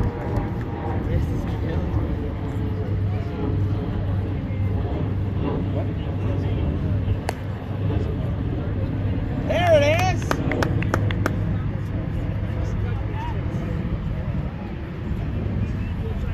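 Outdoor field ambience of a vintage base ball game: a steady low rumble with scattered distant voices of players and spectators. About seven seconds in there is one sharp knock as the bat meets the ball, and near ten seconds someone shouts a drawn-out call, followed by a few quick claps.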